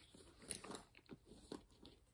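Faint handling noise: a few small clicks and soft crackles as pens and small items are picked up and moved.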